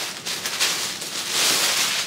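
Clear plastic poly bag crinkling and rustling loudly in uneven swells as a jacket is pulled out of it.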